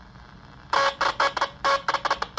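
An AM radio's speaker buzzing with interference from a homemade spark gap transmitter, a battery-driven coil and paperclip interrupter, as its paperclip switch is keyed in Morse code. The buzz comes in a run of short and longer bursts with gaps between, starting about two-thirds of a second in.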